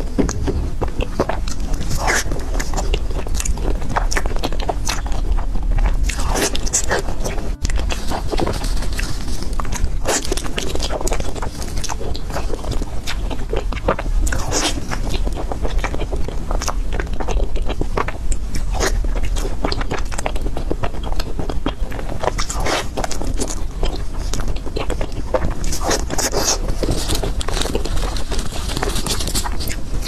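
Soft glutinous rice cakes being bitten and chewed, with many short, wet mouth sounds and lip smacks throughout, over a steady low hum.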